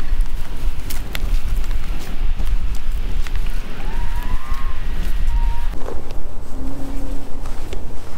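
Wind buffeting the microphone: a steady, uneven low rumble, with a few faint short gliding tones about halfway through.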